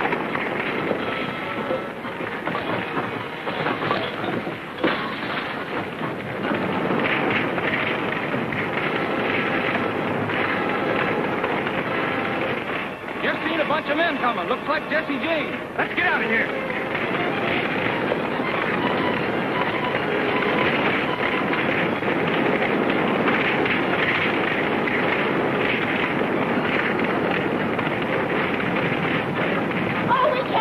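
A burning wooden house crackling and popping without a break, with indistinct voices and some music mixed under it.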